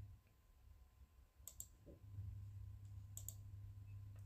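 Two faint computer mouse clicks, each a quick double tick of button press and release, about a second and a half in and again a little past three seconds, over a faint low hum.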